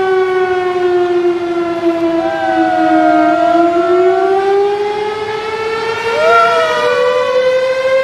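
Emergency-vehicle siren in a slow wail: its pitch sinks gently for about three seconds, then climbs steadily. Two short wavering tones rise over it, about two and six seconds in.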